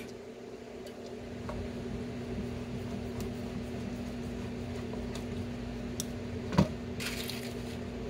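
Square-drive (Robertson) wood screws being turned in by hand with a screwdriver through a steel piano hinge into plywood: faint creaking turns over a steady hum. Near the end there is a sharp knock, then a brief scrape.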